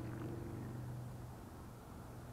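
A low, steady motor hum that eases off after about a second and a half.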